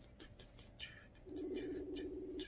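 Telephone ringback tone: a steady low tone lasting about a second, starting a little over a second in, repeating the cadence of the tone just before it. It is the sign of an outgoing call ringing and not yet answered. A few faint clicks come earlier.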